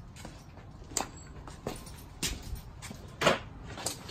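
A few footsteps on a concrete shop floor over a low steady hum, the loudest step about three seconds in.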